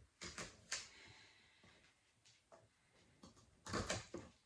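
Kitchen knife cutting rhubarb stalks into half-inch pieces on a wooden cutting board. The blade knocks on the board three times in the first second, taps faintly in between, and knocks twice more, louder, near the end.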